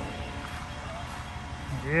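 Diesel engine of a concrete mixer truck running at idle nearby, a steady low rumble.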